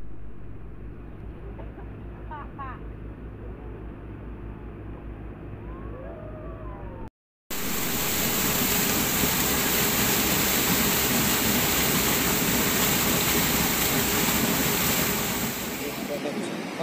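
A small engine runs with a steady low throb for the first seven seconds or so. After a brief break, a loud, steady rush of water takes over: a flood-drainage pump's discharge hose is gushing water into a river.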